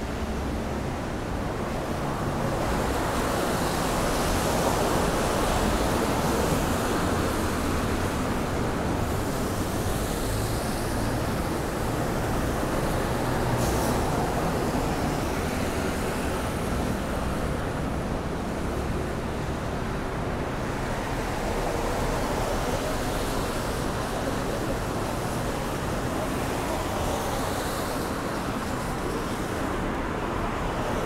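Steady city road traffic: cars passing on a wet street, their tyres hissing, the noise swelling and easing as vehicles go by.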